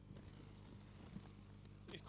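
Near silence: a faint steady low electrical hum from the PA system, with a few faint small ticks.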